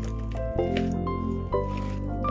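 Instrumental music with held chords that change about once a second. Underneath it, the soft, sticky squishing and small clicks of white slime being kneaded by hand in a plastic tub.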